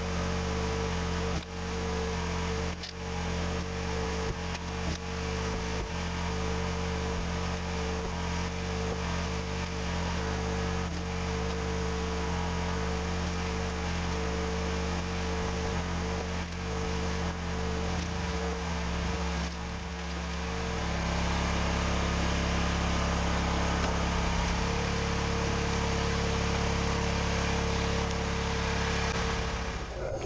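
Hydraulic log splitter's motor running with a steady hum, with scattered knocks of wood against the machine in the first half. About two-thirds of the way through the motor's tone shifts and it gets a little louder.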